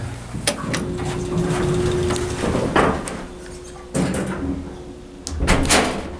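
Hydraulic elevator car doors sliding shut, ending in a heavy thud near the end as they close, with a steady hum in the background.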